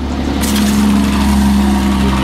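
Tap water pouring from a faucet into a stainless steel sink, starting about half a second in as the handle is turned on, over a steady mechanical hum.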